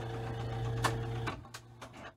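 Seeburg Select-O-Matic 200 jukebox mechanism running: a steady motor hum with a sharp click a little under a second in and a few lighter clicks near the end as it winds down.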